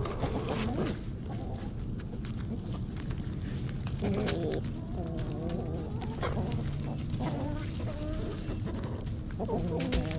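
Hens clucking as they forage and peck at food on the ground, with runs of low, wavering clucks through the middle.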